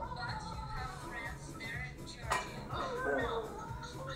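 Voices talking over background music, with a single sharp click a little over two seconds in.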